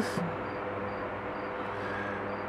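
Steady low background hum and hiss of room noise, with no distinct event. A faint high tick recurs about twice a second.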